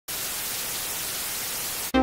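Analogue TV static: a steady, even hiss of white noise that cuts off sharply just before the end, where electronic music starts.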